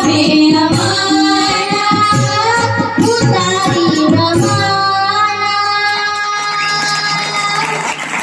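Young girls singing a Marathi devotional song (bhakti geet) with harmonium and tabla. The tabla strokes stop about halfway, and the song closes on long held notes that end just before the end.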